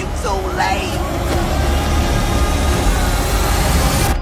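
Trailer sound design: a dense, swelling build with a deep rumble and a rising pitch, with shouting voices in the first second, cutting off suddenly at the end.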